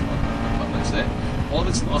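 Caterham Seven 310R's four-cylinder engine running at steady revs, heard from the open cockpit under wind and road noise.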